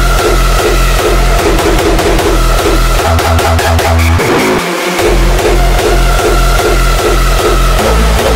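Hardstyle electronic dance music: heavy distorted kick drums beating at a steady fast pace under a held synth lead. The kick drops out for a moment about four and a half seconds in, then comes straight back.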